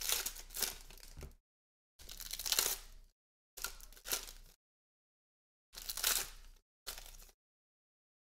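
Foil trading-card packs being torn open and their wrappers crinkled by hand, in about five short bursts with silence between them.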